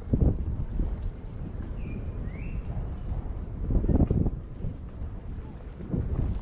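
Wind buffeting the microphone of a camera on an electric unicycle riding a bumpy dirt trail, a steady low rumble with louder thumps at the start and about four seconds in.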